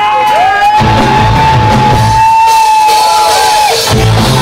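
Live rock band breaking off its beat while one long high note, slid up into, is held for about three seconds over crowd noise. The full band comes back in at the very end.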